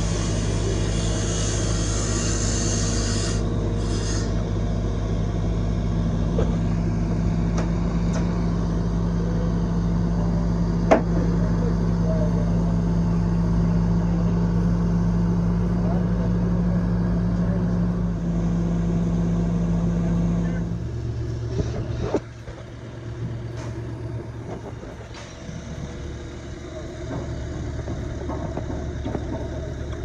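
Engine of construction equipment running steadily with a low hum, and one sharp knock near the middle. About two-thirds of the way through the loudness drops and a different, quieter engine note takes over.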